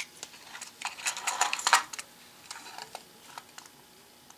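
Light clicks and clinks of handling a small glass vial of steel E-clips and a plastic compartment box: a sharp click at the start, then a cluster of small metallic clinks about a second in, and a few faint ticks after.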